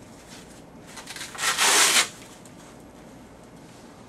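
Hook-and-loop fastener on a blood pressure cuff ripped apart as the cuff is opened out: one short rasping rip of about half a second in the middle, after a few soft rustles of the cuff fabric.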